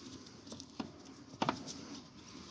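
Close handling noise: rustling of a sleeve brushing against the camera and paperback books scraping on a library shelf, with a few soft knocks, the loudest about a second and a half in.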